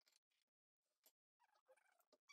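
Near silence, with only a few very faint, brief sounds.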